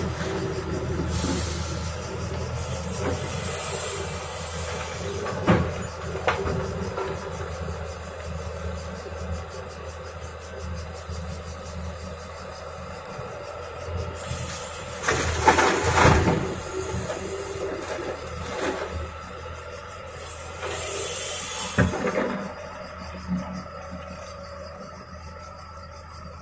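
Tracked excavator's diesel engine running steadily while it loads earth into a tipper trailer. Two louder rushes of soil and stones pouring from the bucket into the steel trailer body come about fifteen and twenty-one seconds in.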